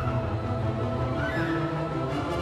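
Show music playing continuously, with a short sliding high sound about a second and a half in.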